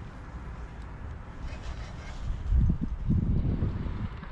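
Wind buffeting the microphone in a low, uneven rumble, with stronger gusts about halfway through.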